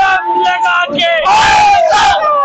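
A group of young men shouting and whooping together on a swinging boat ride, their voices overlapping, with one loud long shared yell about a second and a half in.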